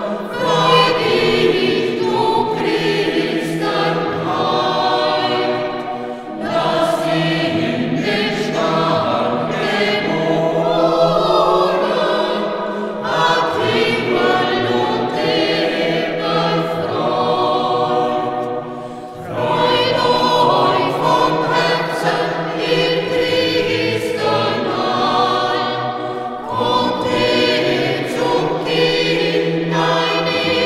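A mixed church choir of men's and women's voices singing a sacred choral piece. Its sustained phrases break briefly about six and nineteen seconds in.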